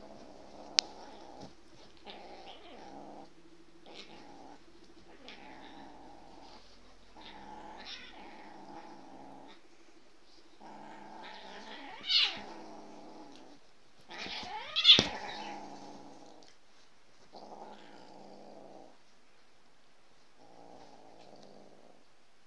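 A cat growling in a string of drawn-out stretches about a second long, breaking into two loud, wavering yowls about halfway through and again some three seconds later, as a dog wrestles with it. A single sharp click comes near the start.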